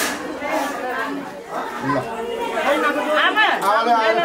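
Several people talking at once in overlapping chatter, with no music.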